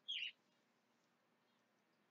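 Near silence: room tone with a faint steady hum, broken right at the start by one brief, faint high chirp.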